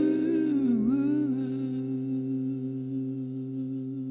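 The final held note of a song dying away: a sustained chord rings on under a soft hummed vocal that dips in pitch about a second in and then holds steady, the whole fading out.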